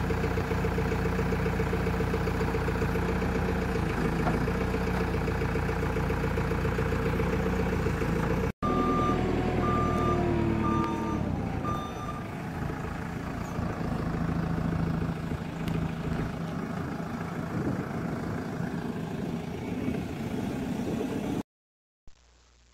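JCB 524 telehandler's diesel engine running steadily under load while unloading logs. About halfway through, a reversing alarm sounds four short beeps, then the engine runs on.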